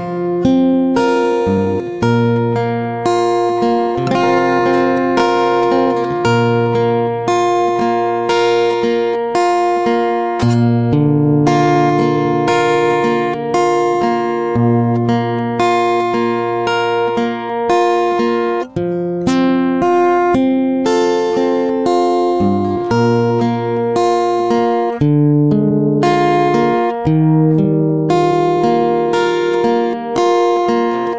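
Acoustic guitar karaoke backing track with no vocal: strummed chords over changing bass notes, played steadily.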